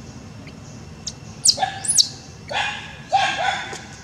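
Infant macaque crying: two sharp squeals that sweep up and down about a second and a half in, then two longer, rougher cries. These are the cries of a baby separated from its mother.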